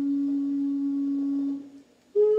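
A flute holding one long, low note that fades out near the end, closing a phrase of a slow solo melody.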